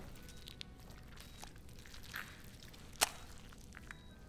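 Quiet room tone with a soft rustle about two seconds in and a single sharp click about three seconds in.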